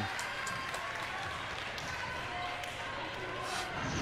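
Low murmur of crowd and players in a gymnasium during a stoppage in play, with a few faint knocks of a basketball bouncing on the hardwood court.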